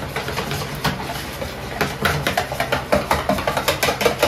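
A wire whisk beating thin takoyaki batter in a plastic mixing bowl: rapid, irregular clicks and taps of the whisk against the bowl, with the swish of the liquid.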